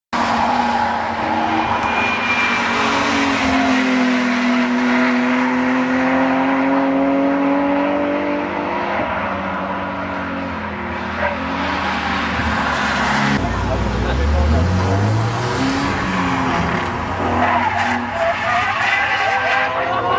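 BMW cars driven hard on a race circuit: engines held at high revs, one note climbing slowly for several seconds, with tyre squeal as cars slide through the corners. About two-thirds of the way in the sound changes abruptly to a deeper engine revving up quickly.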